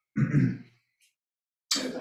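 A person clears their throat once, briefly, and speech begins near the end.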